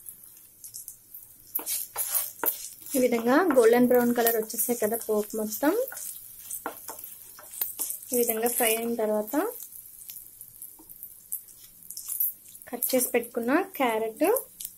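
Tempering of dals, seeds, chillies, garlic and curry leaves frying in hot oil in a nonstick pan, with a fine, steady crackle and sizzle, and a wooden spatula stirring it around the pan. A voice talks at intervals over it.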